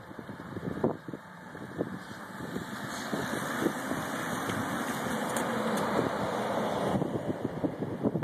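A group of road bicycles passing close by with a following car: tyre and drivetrain whir mixed with the car's engine, swelling through the middle and easing off near the end.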